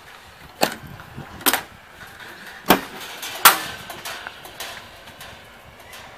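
Four sharp metallic clunks over about three seconds as the latch and door of a stainless steel Cookshack smoker are worked open.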